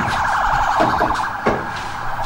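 An emergency vehicle's siren in a fast yelp, its pitch warbling rapidly up and down, with a light knock about a second and a half in.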